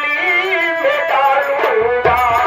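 A man singing a nautanki song over a PA microphone with a wavering, ornamented melody, backed by stage musicians. A drum comes in just before the end.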